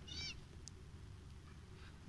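Quiet room tone with one brief, faint, high-pitched animal call right at the start, its pitch bending, and a faint tick a little later.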